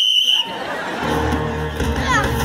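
A sports whistle blows once with a steady shrill tone, cut off about half a second in. Background music with low bass notes follows.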